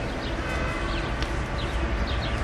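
Small birds chirping repeatedly in short, falling chirps over a steady low rumble of outdoor background noise.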